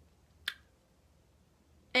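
A single short, sharp click about half a second in, over quiet room tone.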